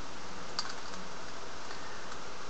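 Middle (E) slice of a 3x3 Rubik's cube being turned by hand, with a faint plastic click about half a second in, over a steady hiss.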